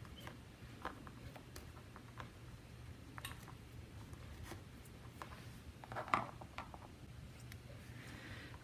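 Faint, scattered small ticks and rustles of a thin metal pick working at the stitching of a cloth face mask, with a slightly louder rustle about six seconds in.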